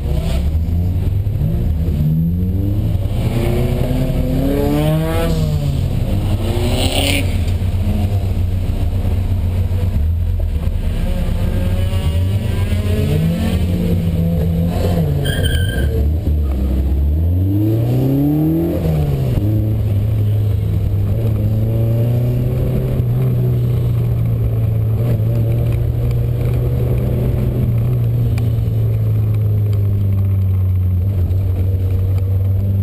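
1979 Volkswagen Golf GTI's four-cylinder engine, heard from inside the car, revved up and down in several short blips while creeping forward, then running steadily under light throttle for the last third.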